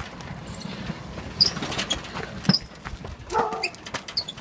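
Riding lawn mower with a broken differential being pushed by hand, its knobby tyres rolling and crunching over gravel and pavement with scattered clicks and rattles. A brief pitched squeal sounds about three and a half seconds in.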